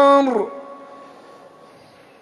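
A muezzin's chanted voice holds the last long note of an 'Allahu akbar' of the adhan, the Islamic call to prayer, and stops about half a second in. The sound then fades away slowly over the next second or so.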